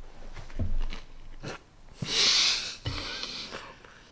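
Close-up chewing of a mouthful of thick-crust pizza with soft, wet mouth sounds, and a loud, sharp breath out through the nose about two seconds in.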